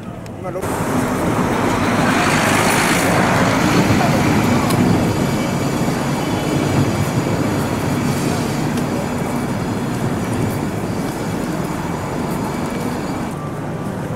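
Steady city street noise of passing traffic and vehicles, swelling for a few seconds about two seconds in, with indistinct voices underneath.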